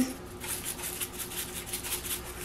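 A plastic spice shaker being shaken over raw pork chops in a glass bowl: a quick, even run of soft rattling shakes, with dry seasoning falling through the sifter top onto the meat.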